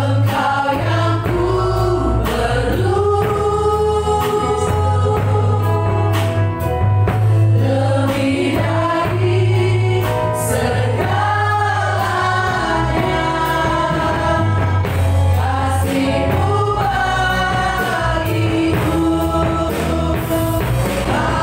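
Live church worship band: several singers singing an Indonesian worship song together over keyboard, electric guitar and drums, with a steady beat.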